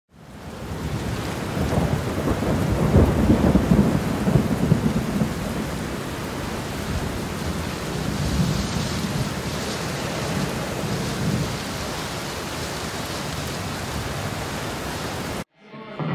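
Thunderstorm: steady rain hiss with rolling thunder, the thunder heaviest in the first few seconds. It fades in at the start and cuts off suddenly shortly before the end.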